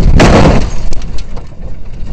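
An MGB racing car crashing into a tyre wall: one loud, sudden impact about a quarter-second in, then the noise dies away.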